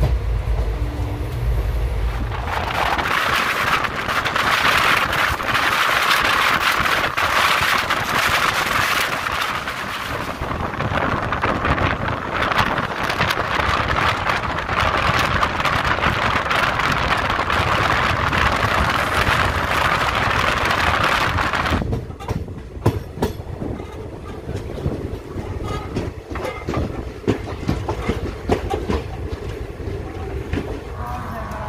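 Express passenger train running, heard from the coach: a loud, steady rush of wheels on rails and wind. About two-thirds of the way through the rush drops off sharply, leaving quieter running broken by separate clacks of the wheels over rail joints.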